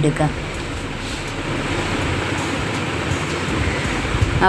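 Marinated chicken pieces sizzling as they fry in oil in a nonstick pan: a steady, even hiss.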